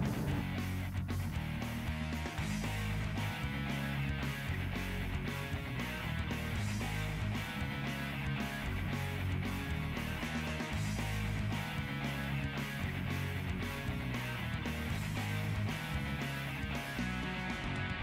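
Background instrumental music with a steady beat.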